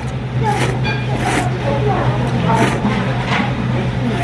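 Ramen noodles being slurped in about four short pulls, over a steady low hum and background voices.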